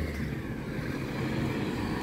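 Steady low rumble of outdoor street background noise, mostly at the bass end, with no distinct events.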